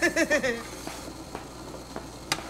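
A woman laughing, a quick run of 'ha-ha' pulses that stops about half a second in, followed by low room noise.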